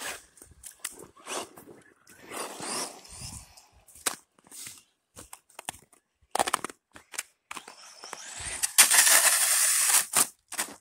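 Scattered knocks and rustles, then from about eight seconds in a loud, building rush of noise as a 1/10-scale RC buggy on a 2845 5900kv brushless motor speeds toward and past at full throttle on asphalt.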